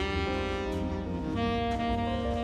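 Jazz-style background music with a saxophone lead playing long held notes over a steady bass line.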